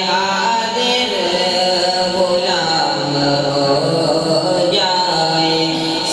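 A young man's voice chanting an unaccompanied, melodic religious recitation into a microphone, in long held notes that waver and change pitch.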